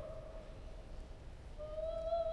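A soprano's held note fades away into a brief quiet pause. About a second and a half in, she starts a new sustained note with vibrato.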